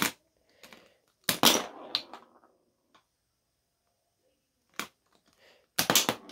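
B-Daman toy marble shooter being fired: a loud plastic crack about a second in, a smaller knock half a second later, then a single sharp click near the end.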